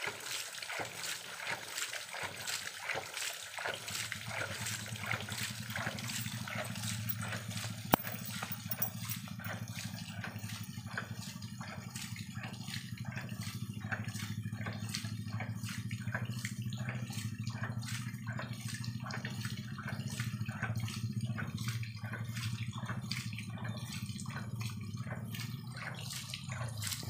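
Homemade 4-inch PVC hydraulic ram pump (hydram) running: its waste valve cycles in a steady rhythm of roughly two beats a second, with water splashing out at each stroke. A steady low rushing sound joins underneath from about four seconds in.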